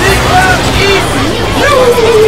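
Many children's cartoon soundtracks playing over each other at once: a dense jumble of overlapping character voices, music and sound effects.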